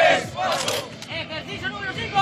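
A group of male recruits shouting together during a rifle drill exercise, many voices overlapping, loudest at the start.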